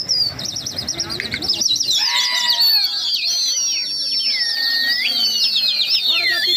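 Several pigeon fanciers whistling at a flock of fancy pigeons flying overhead: shrill, overlapping warbling and trilling whistles, with long falling and rising glides. More whistles join in from about two seconds in. The whistling is meant to bring the flock down to dive.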